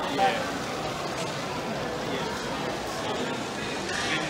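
Indistinct background voices and chatter over a steady din, with one voice briefly louder at the start.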